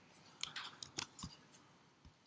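A few faint, quick clicks and taps close together, about half a second to a second and a half in.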